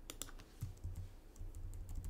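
Computer keyboard keys being typed: a quick run of light clicks, then a few scattered key presses, over a faint low hum.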